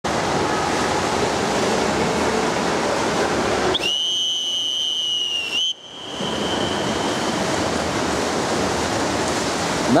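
A starter's whistle blows one long, steady note for about two seconds, starting about four seconds in, with a slight rise in pitch as it ends: the long whistle that calls a swimmer up onto the starting block. Under it runs a steady wash of indoor pool noise from water.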